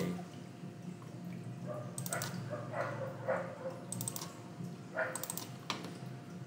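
Computer mouse clicking in small quick groups, about two seconds in, about four seconds in and again about five seconds in, over a steady low hum.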